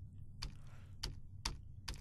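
Four faint, sharp clicks about half a second apart from a computer keyboard and mouse being worked, over a low steady hum.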